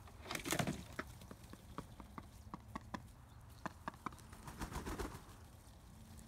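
Khaki Campbell ducks preening: many soft, irregular clicks of bills working through feathers, with two louder rustles, one about half a second in and one near five seconds.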